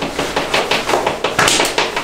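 Fast typing on a laptop keyboard: a quick, irregular run of loud key clicks.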